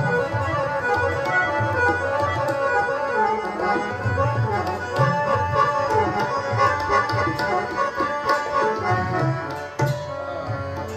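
Harmonium playing quick melodic phrases in Raag Yaman over a tabla accompaniment, with deep, regular bass-drum strokes and sharp finger strokes.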